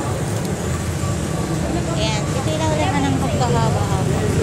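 Steady low rumble of road traffic, with a person's voice talking over it in the second half.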